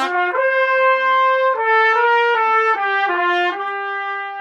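Two trumpets playing together, a slow phrase of held notes that steps downward and ends on a long held note.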